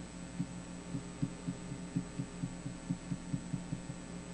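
Soft, muffled low knocks on the desk from working the computer while painting, about three to four a second and quickening after the first second, over a steady electrical hum and faint hiss.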